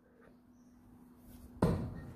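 A thrown steel-tip dart striking the dartboard: one sharp thud about one and a half seconds in, after near silence.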